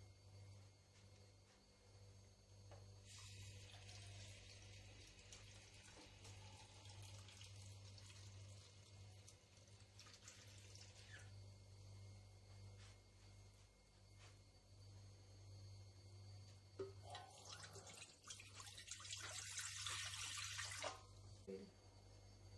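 Faint running water for several seconds, then water poured into a bread maker's nonstick pan near the end, a louder pouring that stops about a second before the end. A low steady hum runs underneath.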